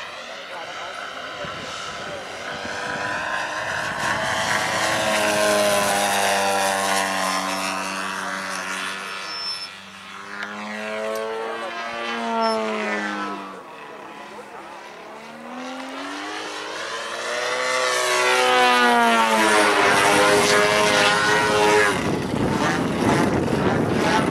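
An RC aerobatic Extra's GP 123 model engine and propeller running in flight. The pitch rises and falls with throttle and the plane's passes. It is loud through the first few seconds, drops off around ten seconds in and again a few seconds later, then swells loudest near the end.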